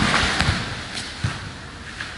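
Dull thumps of a body swept down onto padded grappling mats, several in the first second and a half, with rustling of gi cloth as the sweeper gets up.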